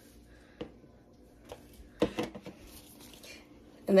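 A few soft clicks and taps as small cooked pancakes are picked off an electric griddle by hand and dropped into a bowl, the sharpest one about two seconds in.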